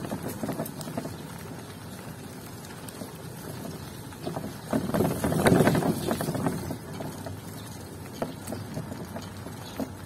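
Motorcycle with a sidecar running along a wet concrete street, engine and road noise steady, growing louder and rattlier for a second or two about five seconds in.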